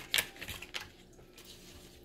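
Tarot cards being handled and drawn from the deck: a few crisp clicks in the first second, the first one the loudest.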